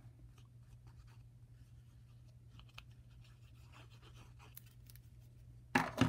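Faint scratching of a bottle of multi-purpose liquid glue, its nozzle drawn across cardstock as glue is squeezed out in lines. A brief, louder handling noise comes just before the end.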